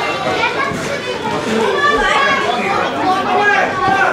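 Crowd shouting and calling out, many overlapping voices with children's voices among them, in a large hall.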